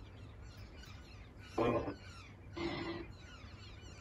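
Spirit box sweeping radio stations through a small JBL Bluetooth speaker: two short, choppy bursts of radio sound about a second and a half in and near three seconds, over a low hiss. The investigator takes them for a spirit's answer, "eu frequento" ("I attend").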